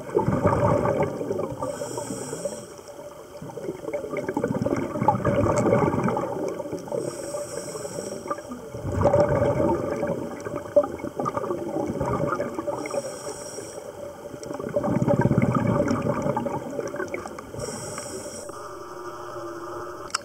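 A scuba diver breathing through a regulator underwater: a short high hiss on each inhale, then a longer rush of exhaled bubbles. The cycle repeats about every five to six seconds, four times.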